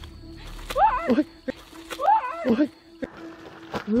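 A woman crying out "oi!" twice as she strains for footing on a soft, slippery mud bank, each cry sliding up and then down in pitch. A few light taps of her sandals on the mud come between the cries.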